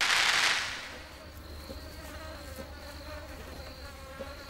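A short loud whoosh that fades away over about a second, then a steady buzz of insects with a thin high whine held over it through the middle.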